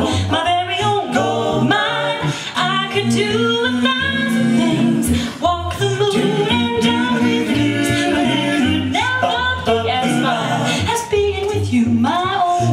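A cappella vocal jazz quintet singing live: several voices in close harmony, with a low voice holding steady bass notes underneath.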